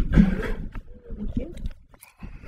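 A microphone cuts in suddenly from silence, with rumbling handling noise and breath as it is picked up and brought to the mouth, and a short spoken 'thank you' near the end.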